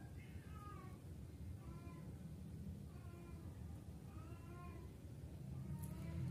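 A cat meowing faintly, about four short drawn-out calls spaced a little over a second apart, over a low steady hum.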